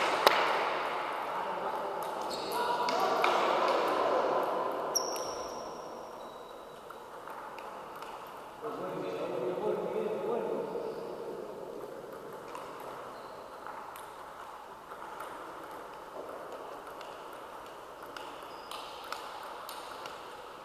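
Table tennis play: the ball clicking sharply off the paddles and the table at irregular intervals, echoing in a large sports hall, over a murmur of voices.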